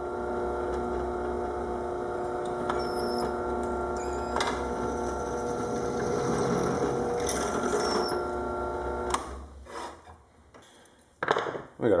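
Benchtop drill press running steadily while drilling a connector hole into the end of a small plastic project box, with a few light ticks from the bit cutting; the motor stops about nine seconds in.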